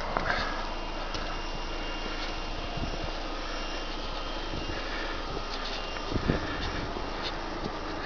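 Steady low background noise of a residential street, with faint scattered clicks and a couple of soft bumps about six seconds in from a handheld camera being carried along the pavement.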